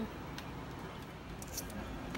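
Faint handling sounds from hands pulling pods and fibres out of a cut-open jackfruit on paper: a few short clicks and rustles, over steady background noise.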